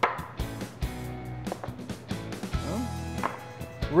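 Light background music, with several short knocks as small ceramic ramekins are emptied into a glass mixing bowl and set down on a wooden cutting board.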